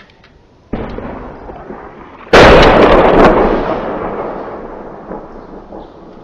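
Two artillery blasts during shelling: one under a second in, then a much louder one about a second and a half later, each trailing off in a long rumble lasting a few seconds.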